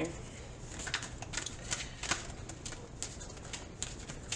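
A deck of affirmation cards being shuffled by hand: a run of soft, irregular card flicks.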